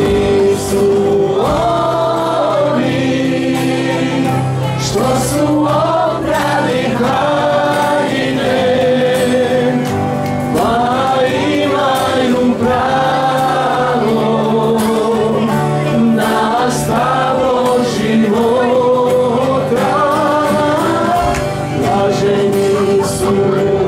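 Live worship music: several men and women singing together into microphones over acoustic guitars and a keyboard, with long held notes.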